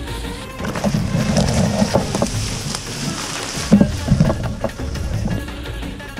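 Background music with a beat. For the first few seconds it thins, and a high hiss and several sharp knocks come through.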